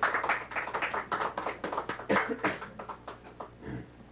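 A small group of people clapping their hands, the claps thinning out and stopping near the end.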